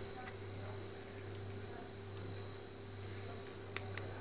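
Faint room tone with a steady low hum and a thin high whine, a few soft ticks, and one sharp click near the end.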